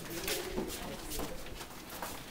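Footsteps hurrying along a hallway floor, with short low murmurs of voice among them.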